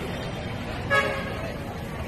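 A single short, loud horn toot about a second in, over the steady chatter and bustle of a busy market crowd.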